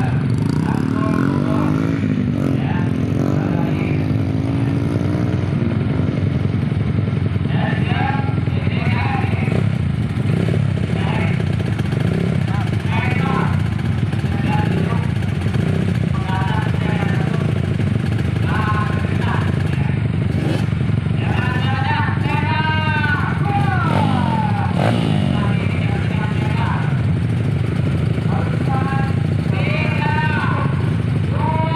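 Several dirt-bike engines idling together at a start line, with a couple of revs that rise and fall in pitch. A man's voice talks over them.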